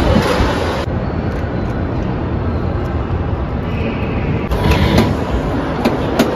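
Loud, steady rumbling noise of an amusement ride in motion, heard from a rider's seat, turning duller about a second in.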